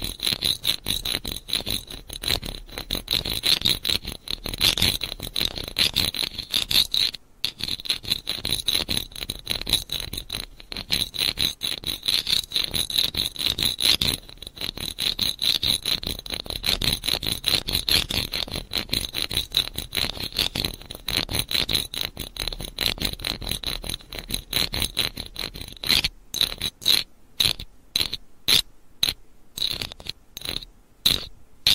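Close-miked ASMR trigger sound: a dense run of very rapid small clicks and scrapes with a bright, ringing edge. Near the end it breaks into separate strokes about two a second.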